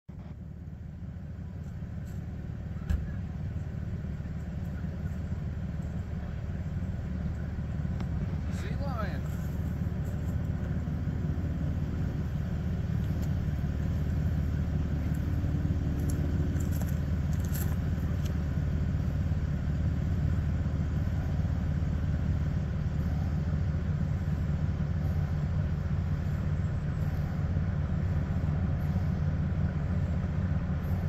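Ship's engines running with a steady low drone that grows louder as the small cruise ship National Geographic Sea Lion approaches.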